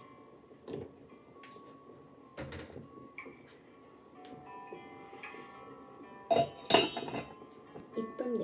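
Stainless-steel pot lid set onto its pot: two loud metallic clanks with a short ring near the end, after a couple of lighter knocks.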